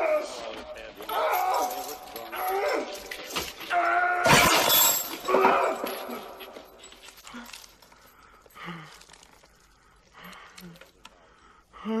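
A man's wordless grunts and moans, with a sudden crash about four seconds in; the sounds grow faint in the second half.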